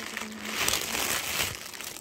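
Packaging being handled, crinkling and rustling, loudest around the middle.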